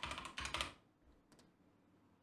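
Typing on a computer keyboard: a quick run of keystrokes in the first second, then a couple of faint taps about one and a half seconds in.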